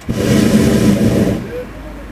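Hot air balloon propane burner firing in one loud blast of about a second and a half, then cut off.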